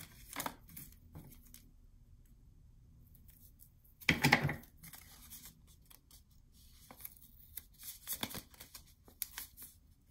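Paper and cardstock being handled and rustled, with one short, loud tearing sound about four seconds in, typical of a strip of double-sided tape being pulled off and its backing peeled. Softer rustles and small taps follow.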